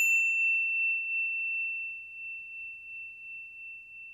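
A logo-sting chime: a single high, bell-like ding rings on as one pure tone and slowly fades, wavering gently as it dies away.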